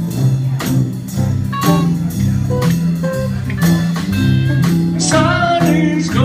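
Live band playing: acoustic and electric guitars over a repeating low riff, with drums keeping a steady beat of about two strokes a second. A man's singing voice comes in about five seconds in.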